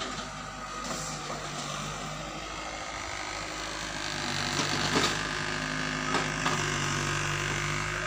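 Mini excavator's diesel engine running steadily, with a few sharp knocks about a second in and again around five and six seconds in.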